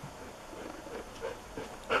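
A husky making a few short, faint whines.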